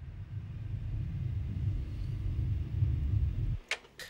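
Low rumbling drone from a horror film's soundtrack, building up and then cutting off suddenly about three and a half seconds in.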